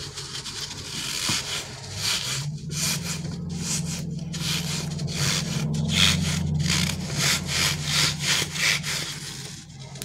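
Hands rubbing and squeezing a stretchy rubber crocodile squishy toy: repeated rubbing strokes at roughly two a second. A low steady hum runs underneath from about two seconds in until near the end.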